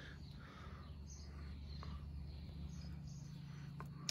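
Faint outdoor background: a steady low hum with a few faint chirps and a couple of small clicks.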